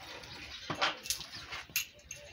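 Milk squirting from a cow's teats into a plastic bucket during hand milking: a few short, sharp streams roughly half a second apart.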